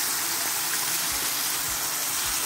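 Cornstarch-coated pork belly pieces sizzling in hot oil in a frying pan: a steady, even hiss while they fry until golden brown.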